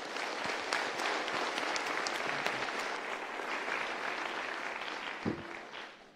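An audience applauding in a large hall: many hands clapping at once, steady for several seconds and then dying away near the end.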